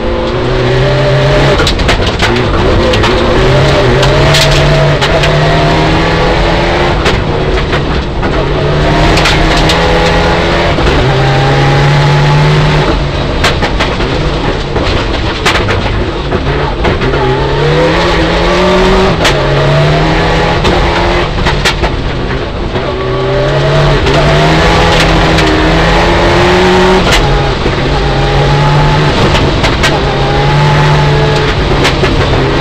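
Mitsubishi Lancer Evolution IX rally car's turbocharged 2.0-litre four-cylinder engine, heard from inside the cabin, revving hard and climbing and dropping in pitch again and again through the gears at stage speed. Scattered knocks and clatter come from the gravel road under the car.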